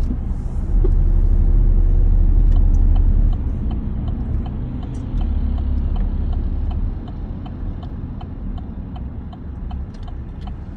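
Car interior road and engine rumble while driving, loudest for a couple of seconds near the start. A turn signal clicks steadily through it, about two clicks a second, ahead of a right turn.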